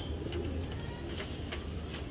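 Domestic pigeons cooing faintly over a steady low hum.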